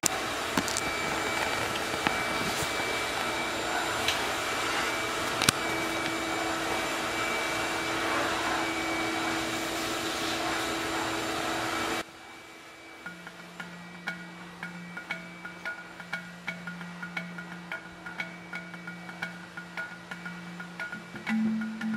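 Steady heavy rain, an even hiss with a few sharp drip clicks, that cuts off abruptly about twelve seconds in. After that, quieter background music with a steady low tone and light tapping.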